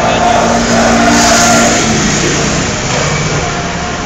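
A car driving slowly past close by on a city street, loudest about a second in, with people's voices over it.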